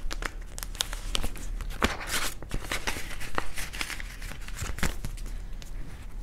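Clear plastic binder zip envelope and paper banknotes crinkling and rustling as they are handled, with scattered small clicks and taps.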